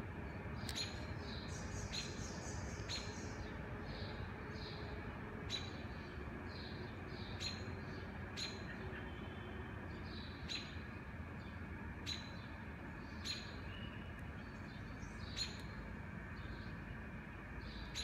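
Small birds chirping, short sharp chirps every second or two, over a steady low hum of city background noise.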